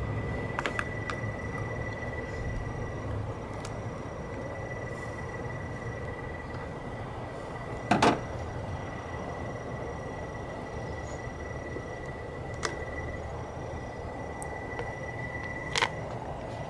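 Plastic cell cover on a Duracell lead-acid car battery being pried off with a flathead screwdriver: a few light clicks and one sharp snap about halfway through, over a steady low background hum.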